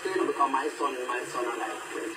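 A man talking, played back through a television speaker.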